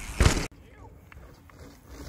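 Mountain bike passing right over a ground-level camera as it lands a jump: a short, very loud rush of tyre and landing noise that cuts off suddenly, followed by quiet trail ambience with a few faint clicks.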